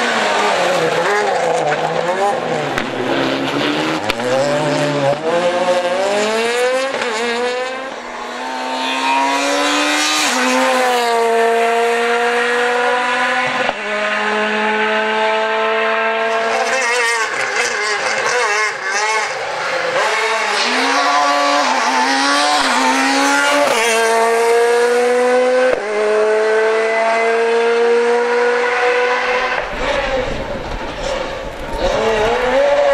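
Ford Fiesta S2000 rally car's naturally aspirated 2.0-litre four-cylinder engine at full throttle. The revs climb steeply again and again, with abrupt drops at each gear change. It runs loud throughout, with wavering revs in a stretch past the middle.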